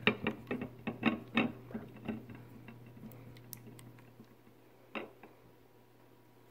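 A utensil clicking and scraping against a glass bowl while stirring tinted glue, with quick irregular ticks that thin out after the first couple of seconds and one louder click near the end.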